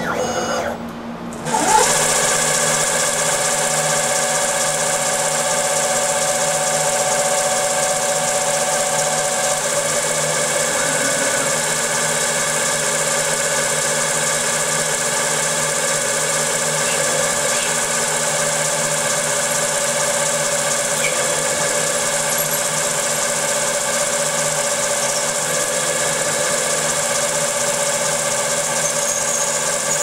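Servo-driven 4th-axis spindle on a CNC mini mill running at speed while a fixed drill spot- and peck-drills a through hole in the spinning aluminium part: a steady machine whine made of several tones at once. It dips briefly and steps up to full running a little under two seconds in.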